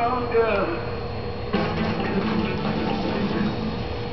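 Television programme playing in the room: indistinct voices and show sound, over a steady faint hum-like tone.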